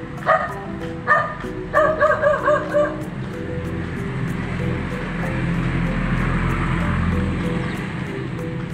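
A dog barks and yips: single barks about a third of a second and a second in, then a quick run of yips over the next second, all over steady background music. A low rushing noise builds through the second half.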